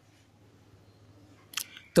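Near silence: room tone, with one brief soft noise about a second and a half in, just before a man's voice starts at the very end.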